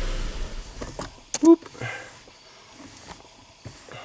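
2006 Suzuki Forenza's four-cylinder engine running with a steady low hum, then switched off within the first half second, its sound dying away quickly.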